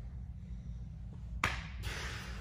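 One sharp hand slap on a gi-clad body about one and a half seconds in, a tap-out as the lapel choke is finished, followed by a brief rustle of gi cloth. A low steady hum runs underneath.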